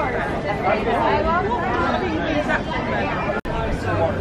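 Chatter of several people talking over one another, with no single voice standing out. The sound drops out for an instant about three and a half seconds in.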